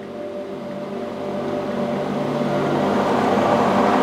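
Allison 250 C18 turboshaft's bare six-stage axial compressor rotor, spun by hand with a speed handle while one half of its case is off. It makes an airy whir that grows steadily louder as the rotor picks up speed.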